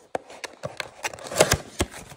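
A cardboard trading-card blaster box (2022 Panini Prizm football) being pushed in at its perforated tab and its top flaps pulled open: a run of cardboard crackles and sharp snaps, the loudest about one and a half seconds in.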